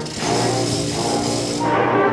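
Student concert band playing sustained chords, with a bright, hissing high percussion wash over them for about the first second and a half, after which the band chords carry on alone.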